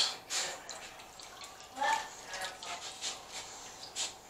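Runny egg-and-lemon-juice filling poured from a mixing bowl into a glass baking dish: faint liquid pouring and dripping.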